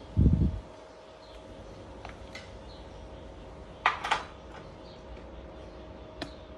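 Metal spoon handling in a nonstick wok of thin garlic-chili sauce: a dull thump right at the start, then two sharp clicks close together about four seconds in, over a faint steady hum.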